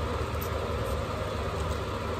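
Steady low hum with an even faint hiss over it: background room noise, unchanging throughout.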